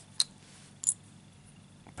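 Two short, sharp metallic clicks about two-thirds of a second apart: a metal lever-padlock tensioner knocking against a steel lever padlock as both are handled.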